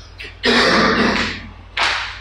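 A man's breathy vocal noise, under a second long, a little rough and pitched, like clearing his throat, then a short sharp breath near the end.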